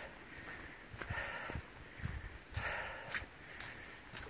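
Quiet footsteps of a hiker walking on a wet dirt trail, soft scuffs and thuds about every half second.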